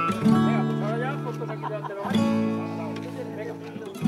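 Acoustic guitar strumming: one chord struck just after the start and another about two seconds in, each left ringing and fading away.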